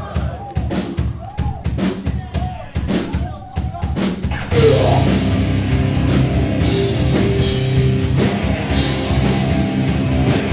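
Live grindcore band: a drum kit beats out separate kick and snare hits, then about four and a half seconds in the full band with distorted electric guitars comes in loud and dense.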